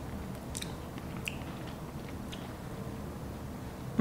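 A person softly chewing a mouthful of raw cupuaçu pulp, with a few faint wet clicks of the mouth.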